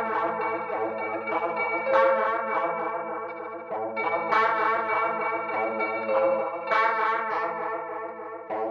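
Psychedelic garage-rock instrumental: distorted electric guitar chords thick with chorus and echo, sustained and wavering in pitch, with a fresh strum about every two and a half seconds.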